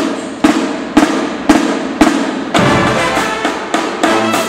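High school marching band playing: the drumline beats out sharp accented hits about two a second, and about two and a half seconds in the horns, including sousaphones, come in with sustained notes over the drums. The hits ring on in the gym's echo.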